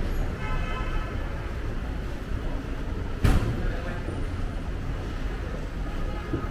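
Steady low rumble of road traffic and car engines, with one sharp knock about three seconds in.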